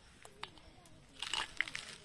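A few small clicks and a short rustle of fresh peanut pods being handled in the hand, with faint voices in the background.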